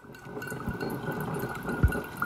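Ninja coffee maker brewing, coffee streaming and dripping into a metal tumbler with a steady gurgling hiss. There are two low thumps, the louder one near the end.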